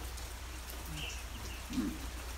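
Quiet open-air ambience in a pause between spoken sentences: a steady low rumble with faint hiss, a few small ticks about a second in, and a brief soft vocal sound near the end.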